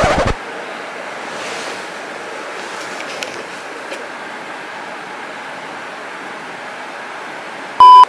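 Steady, even hiss of background noise, then just before the end a short, very loud electronic beep held at one pitch.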